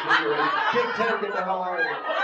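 People talking over one another with chuckling laughter.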